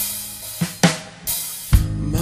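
A drum kit playing alone in a break in a blues-rock band recording. It is a sparse fill of a few snare and bass-drum hits with cymbal washes, and the loudest kick-and-cymbal hit comes near the end.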